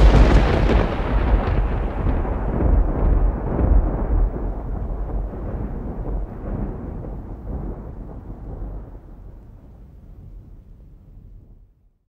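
A long, low rumbling sound effect, like a thunderclap or explosion, loudest at the start and dying away slowly until it fades out near the end.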